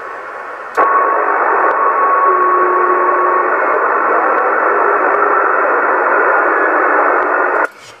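Static hiss from a Yaesu FT-450 transceiver receiving CB channel 27 in upper sideband. It starts suddenly about a second in, carries faint steady whistles in its first half, and cuts off suddenly near the end.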